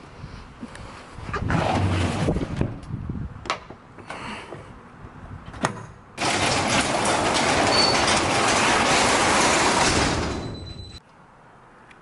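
Plastic tackle boxes clacking and a storage drawer sliding shut, with a few sharp clicks of its latch. Then a loud, steady rushing noise comes in suddenly for about four seconds before fading out.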